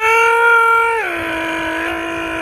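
A person's voice holding a long, loud sung note, then stepping down to a lower held note about a second in, like a vocal warm-up.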